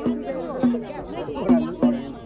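A drum beating a steady rhythm, about two strokes a second, with several people's voices talking over it.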